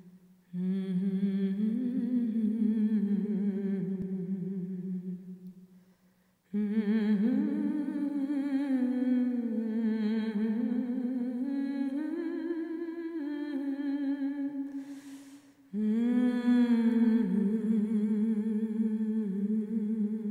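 A voice humming a slow, wordless melody in long held notes with vibrato, in three phrases separated by short pauses about six seconds in and about fifteen seconds in, with a breath drawn just before the last phrase.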